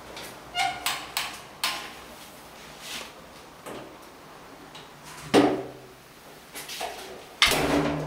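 Clicks and knocks in a small room: a few sharp clicks in the first two seconds, then two louder thuds with a short boomy ring, about five and seven and a half seconds in.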